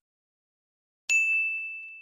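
A single bright bell ding from a subscribe-button animation sound effect. It strikes about a second in and rings out, fading slowly.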